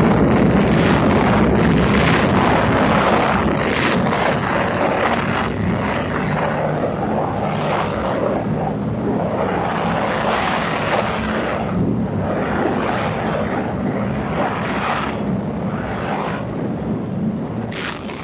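The long rumble of an atomic bomb blast: a dense, steady noise that sets in with a sudden bang just before and fades slowly, with slow swells through it.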